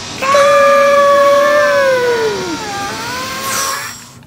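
A man's long, high-pitched yell, held steady for about two seconds and then sliding down in pitch before it fades near the end.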